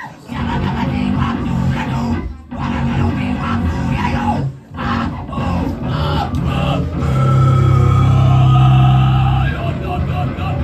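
Live rock band playing loud in a small room: electric bass, electric guitar and drums. The band cuts out abruptly twice, about two and a half and four and a half seconds in, then holds a long, loud low chord near the end.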